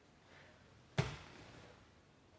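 A single sharp thud of a body landing on the grappling mat about a second in, as an overhook butterfly sweep is set off.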